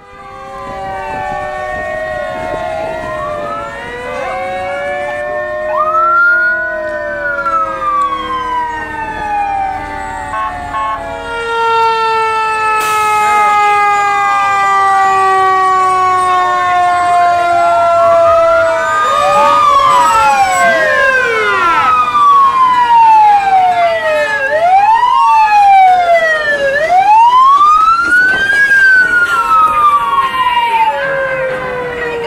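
Several emergency-vehicle sirens wailing at once, overlapping as police cars and fire trucks drive past, their pitches rising and falling. In the second half one siren sweeps up and down every two to three seconds, and the whole grows louder toward the end.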